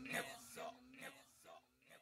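Faint whispered voice with an echo effect, repeating about twice a second and dying away.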